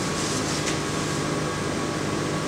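Steady hum and hiss of running plant-room equipment, with a faint high steady tone through it.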